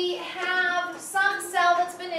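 A high-pitched woman's voice in several drawn-out, sing-song syllables.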